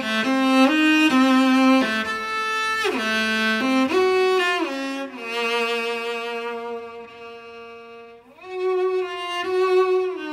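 Cello playing a slow solo melody of long held notes joined by sliding glides between pitches. It grows quieter past the middle and swells again near the end.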